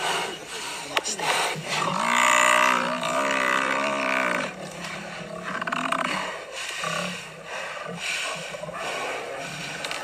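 Lions attacking an African buffalo, with animal cries and growls. About two seconds in, one long drawn-out pitched call lasts some two and a half seconds and is the loudest sound.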